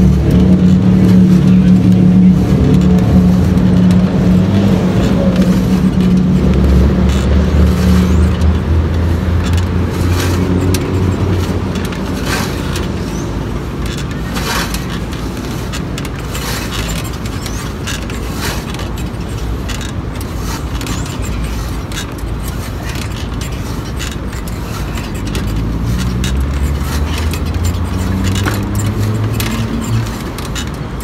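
A motor vehicle's engine running nearby: a steady low drone, loud for about the first ten seconds, then fading, and rising again near the end. Scattered sharp clicks are heard over it.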